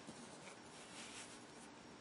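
Near silence: faint hiss with soft rubbing as fingers handle the breadboard.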